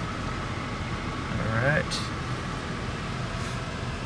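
Steady rush of a 2015 Buick LaCrosse's air-conditioning blower inside the cabin, with a faint steady whine over it. A brief human vocal sound comes about halfway through.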